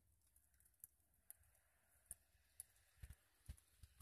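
Near silence, with a few faint scattered clicks.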